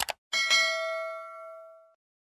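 Two quick click sound effects, then a bright bell ding, struck twice in quick succession, that rings and fades over about a second and a half: the notification-bell sound effect of an animated subscribe button.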